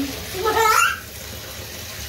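A voice asks "what?" with a sharply rising pitch, over a steady hiss of water in a bathtub.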